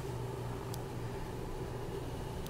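Steady low mechanical hum with a soft hiss, the running of air-moving equipment such as a fan. One faint click a little under a second in.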